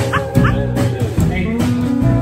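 Live honky-tonk country band playing an instrumental passage: pedal steel guitar, upright bass, drums and electric guitar. A few short, high, rising yelps sound over the band right at the start.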